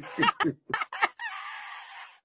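High-pitched laughter: a quick run of short bursts of laughter in the first second, then a longer, breathier, higher laugh held for about a second.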